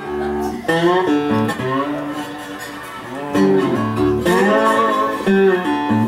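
Acoustic guitar playing a riff of picked single notes and chords, some notes bent in pitch. It starts abruptly out of silence.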